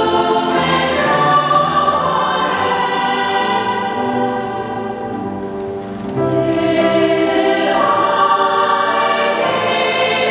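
A choir of children's and women's voices singing sustained chords in a church, softening briefly in the middle and swelling fuller again about six seconds in.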